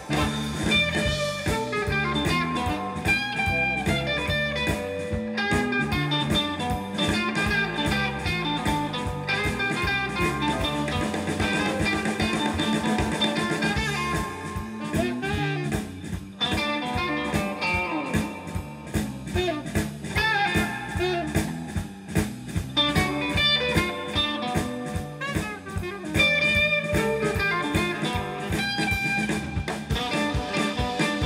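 Live blues band playing an instrumental passage: electric guitars, saxophone and a drum kit keeping a steady beat, with no singing.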